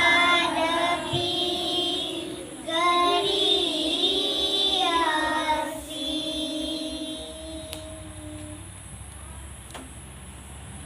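A group of children singing together in unison, in drawn-out sung phrases. The singing breaks off about six seconds in, leaving one held note that fades away, and the last part is much quieter.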